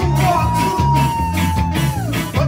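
Live band music: a steady, rhythmic bass line under guitar, with one long high note held over it that falls away just before the end.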